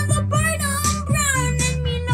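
A children's song: a singing voice over an instrumental backing with a steady bass line.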